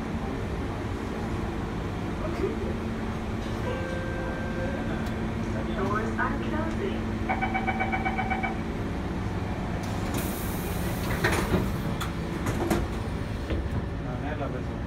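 C651 train's door-closing warning beeps, a quick run of beeps lasting about a second, followed by a burst of air hiss and the thud of the sliding doors shutting, over the steady hum of the stationary train.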